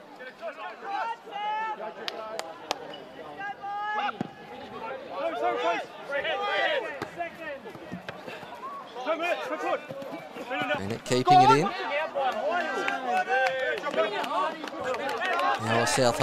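Field-level voices at a football match: players calling to each other and spectators talking, loudest in a shout about 11 seconds in, with a few sharp knocks of the ball being kicked.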